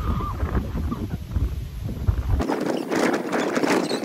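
Wind buffeting a phone microphone, with a few faint, distant shrieks. About two and a half seconds in the wind cuts out and close, loud scuffling and rustling takes over, with quick sharp knocks.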